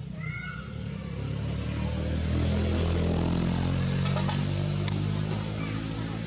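A low, steady motor hum that swells over a couple of seconds and fades again, like a vehicle passing, with a short high call right at the start.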